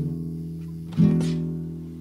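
Acoustic guitar playing the closing chords of a song. A chord rings and fades, then a second chord is strummed about a second in and left to die away.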